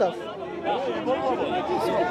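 Several people talking at once, overlapping voices with no one clear speaker, in an outdoor crowd.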